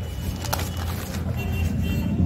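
A paper page being handled and turned, rustling, with a sharp crackle about half a second in, over a steady low background hum.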